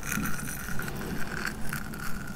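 Close-miked mouth sounds of teeth and lips nibbling on the bristles of a mascara spoolie brush: wet, scratchy bristle sounds with small crisp clicks every half second or so.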